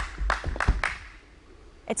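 Running footfalls of a pole vaulter's approach on an indoor runway, about three or four strides a second, fading out after about a second.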